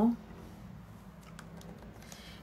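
Quiet room tone with a few faint light clicks in the second half, close together like tapping on keys. The end of a spoken word is heard at the very start.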